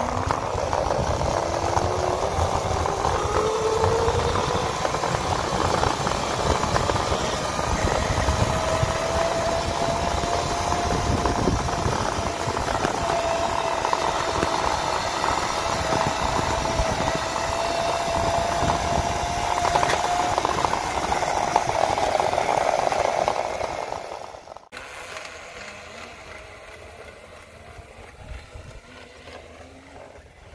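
Razor E90 electric scooter's modified DC motor whining as the scooter accelerates, the pitch climbing over the first few seconds and then holding steady at top speed, over rushing wheel and wind noise. The whine fades about twenty seconds in and the sound drops to a much quieter background a few seconds later.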